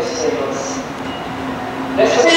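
Freight train approaching through a station, a steady low rumble and hum from the locomotive and wheels on the rails.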